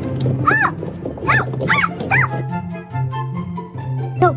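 Background music with four short, high, rising-then-falling yelps from an animal over it, close together in the first half.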